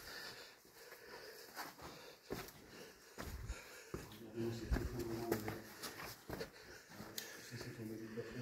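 Irregular footsteps and scrapes on loose stone as people clamber over fallen rock debris in a quarry tunnel, with faint, indistinct voices in the middle and near the end.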